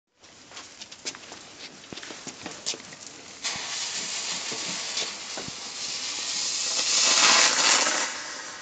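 Small ground firework hissing as it sprays sparks. The hiss starts suddenly about three and a half seconds in, after a few faint crackles, and grows louder toward the end.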